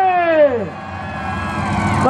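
A long steady pitched tone slides down in pitch and dies away within the first second. It leaves the low rumble of demolition derby cars idling in the arena.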